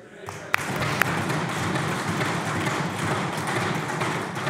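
Legislators applauding and thumping their desks, a steady din that builds a fraction of a second in, with two sharp cracks in the first second.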